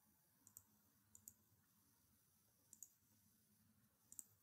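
Near silence: faint room tone with three pairs of short, faint, high-pitched clicks.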